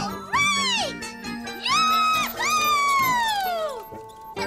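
Cartoon soundtrack: background music under three high, gliding squeals. The first rises and falls, the second rises and holds, and the last is a long downward slide that ends just before the close.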